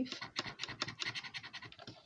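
A plastic scratcher scraping the coating off a scratchcard in rapid short strokes, growing fainter toward the end.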